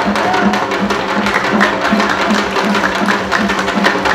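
Korean janggu hourglass drums struck with sticks in a fast, even nongak rhythm, dense with strokes.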